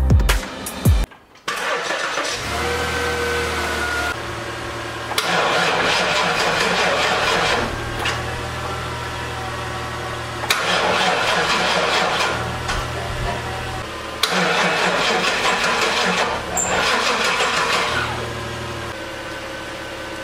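GMC school bus engine cranking on its starter in about four bursts of a few seconds each, turning over but never catching, with a steady low hum between the attempts. The starter and battery are fine; the owner puts the failure to start down to no fuel getting through and suspects the fuel pump.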